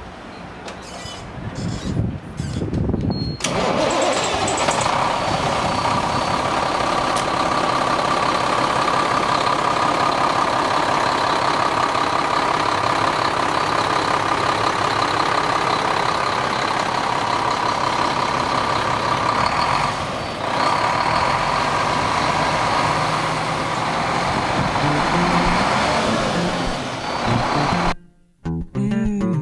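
Cummins M11 inline-six diesel in a 1996 International 8100 truck cranking on the starter for about three seconds, then catching and running at a steady idle.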